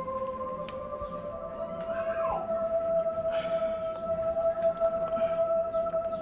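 Background film score: sustained synthesizer tones hold one chord, slide up to a higher one about two seconds in, and hold there.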